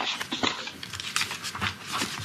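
Paper rustling and shuffling close to a desk microphone, with scattered small clicks and scrapes, as pages of a report are turned.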